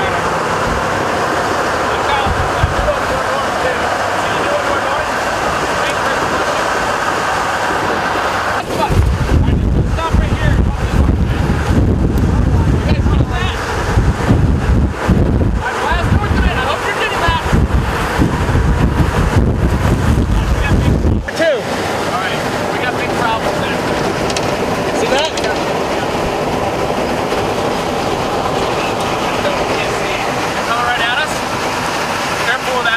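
Tornado winds rushing around a storm-intercept vehicle. A heavy, gusty low rumble of wind buffeting the microphone starts suddenly about nine seconds in and stops just as suddenly about twelve seconds later.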